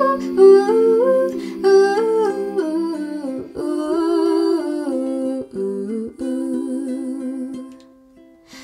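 A woman humming a slow, soft melody over ukulele chords. The music dies away near the end.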